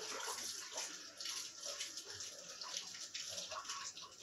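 Tap water running and splashing unevenly as vegetables are washed under it.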